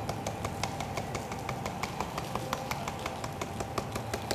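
Icing sugar being dusted over pastries, heard as a fast, even tapping of the duster at about six taps a second.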